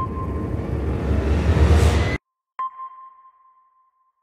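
Logo sting sound effect: a rising whoosh over a low rumble that cuts off suddenly a little after two seconds in, then a single sonar-style ping that rings and fades away.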